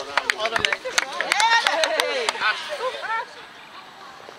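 A group clapping hands, sharp irregular claps several a second, with voices calling out over them. The claps stop a little after three seconds in and it goes quieter.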